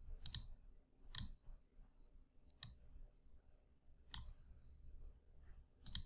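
Faint computer mouse button clicks, about six spread unevenly over a few seconds, made while dragging to resize column labels in a program.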